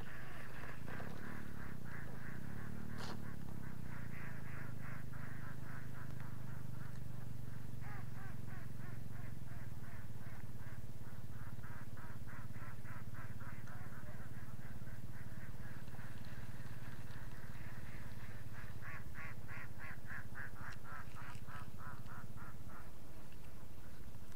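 Animal calls in fast, even runs of about five a second, coming and going in long stretches, over a steady low hum.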